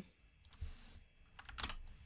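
Faint computer keyboard keystrokes: a short cluster of quick clicks about a second and a half in, as Ctrl+V is pressed to paste a file name.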